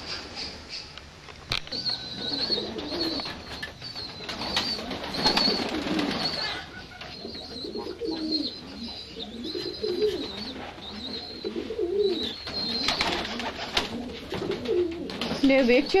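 Domestic pigeons cooing in a loft, a run of low wavering calls one after another, with a thin high-pitched call over them.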